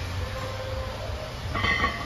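Steady low gym rumble from fans and air handling, with a brief ringing metallic clink near the end, typical of loaded barbell plates shifting during a bench press rep.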